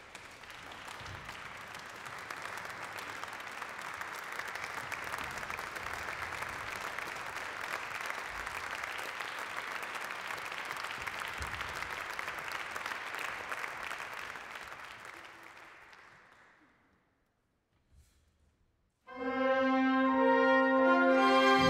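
Concert hall audience applauding, the clapping dying away about sixteen seconds in. After a moment of quiet, the symphony orchestra comes in loudly near the end with a sustained brass-led chord.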